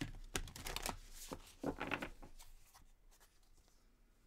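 A deck of tarot cards being shuffled by hand: a quick run of papery card snaps and rustles, busiest in the first two and a half seconds and thinning out toward the end.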